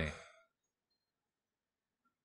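A man's spoken word trails off at the very start, then near silence.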